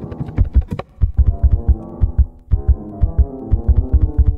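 A steady, regular low electronic pulse with quiet, sparse piano figures in the low and middle register over it.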